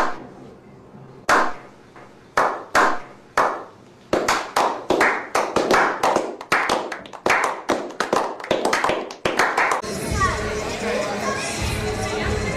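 A slow clap by a small group: single hand claps at first, spaced about a second apart, then more hands join and the clapping speeds up into brisk applause before stopping about ten seconds in. After that comes the steady din and voices of a large indoor hall.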